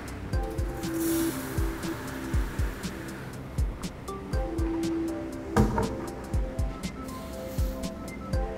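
Background music with a steady beat. About a second in, a hiss of urea prills pouring from a plastic bucket into a blender drum, fading out after a couple of seconds.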